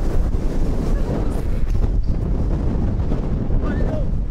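Strong wind buffeting the camera's microphone: a loud, continuous low rumble.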